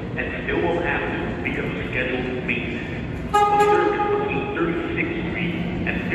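A New York City subway train's horn gives one short toot about three seconds in, over a background of voices.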